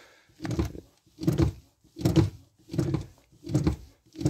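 Brake pedal of a Renault Scenic pumped by foot: five thunks about three-quarters of a second apart. Pumping pushes the rear caliper pistons, wound back for new pads, back out against the pads.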